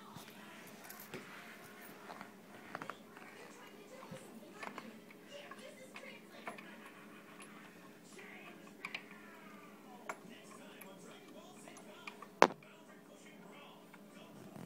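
Faint background speech and music with scattered light clicks and knocks of hands handling things at the underside of a wooden table; one sharp knock stands out near the end.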